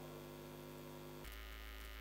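Faint, steady electrical mains hum with no speech. Its tone changes abruptly a little past halfway through.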